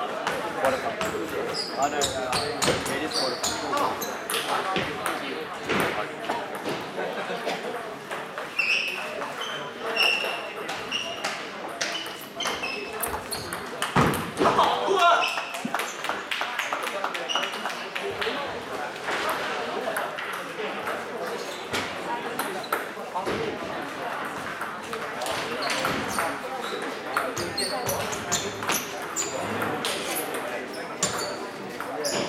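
Table tennis balls clicking off tables and bats at many tables across a busy hall, scattered irregular ticks, over a constant murmur of voices.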